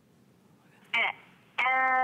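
A telephone caller's voice coming back over the phone line, thin and cut off at the top: a short call about a second in, then a held, drawn-out voice near the end. Before it, about a second of near silence on the dropped line.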